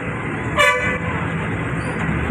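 Steady street traffic noise, with one short vehicle horn toot about half a second in.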